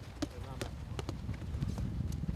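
Footballs being kicked in a passing drill on grass: several sharp, irregularly spaced thuds of boot on ball, with faint voices of players calling in the background.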